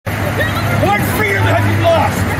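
Indistinct, overlapping voices over the steady low hum of an idling vehicle engine.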